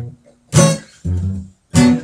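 Acoustic guitar strummed as a song accompaniment in a bathroom: two sharp strums about a second and a quarter apart, with lower notes ringing between them.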